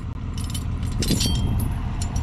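Steel chain links of a Fuerst chain harrow clinking and jangling as they are handled, in a few separate clinks, the loudest about a second in.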